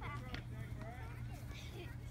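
Distant, indistinct children's voices calling out across a field, over a steady low rumble.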